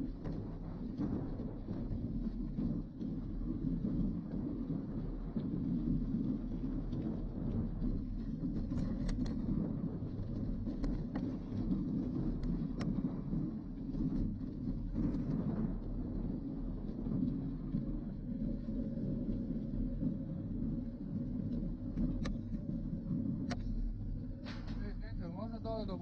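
Mountain bike rolling over a rough dirt and gravel lane: a steady rumble of tyres and frame vibration picked up through a handlebar-mounted camera, with scattered sharp clicks from gravel and rattling parts.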